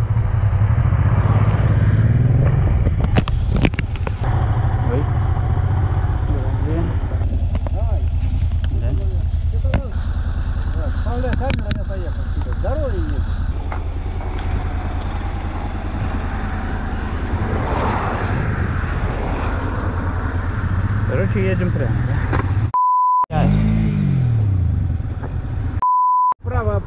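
Motorcycle engine idling steadily, with muffled voices over it and a few sharp clicks early on. Near the end the sound cuts out for under a second and a steady bleep covers a word.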